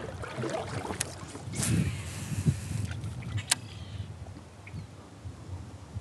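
Kayak paddling: the paddle blade splashes and pulls through river water in a burst about two seconds in, with two sharp clicks, one about a second in and one around three and a half seconds.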